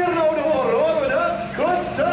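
A voice singing, with long wavering held notes that glide up and down.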